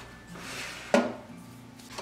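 A metal air-fryer tray slides into a countertop air fryer toaster oven with a brief scrape, then lands with one sharp metal clank just before a second in, ringing off briefly.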